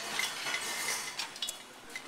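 Metal parts of a wire-puller cart clinking and rattling as they are handled, with a few sharp clicks about a second and a half in.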